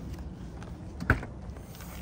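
Footsteps on asphalt over a low, steady outdoor background, with one short knock about a second in.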